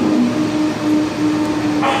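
Steady machine hum of a restaurant dining room, a droning tone over an even hiss, with a man's voice starting near the end.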